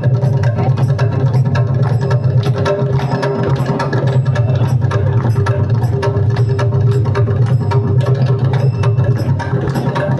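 Mridangam, the South Indian double-headed barrel drum, played in quick, dense hand strokes over a steady low tone that holds underneath.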